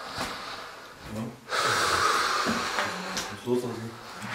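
A person breathing out hard close to the microphone: one long breathy rush lasting about a second and a half, starting about a second and a half in, with brief low voices before and after it.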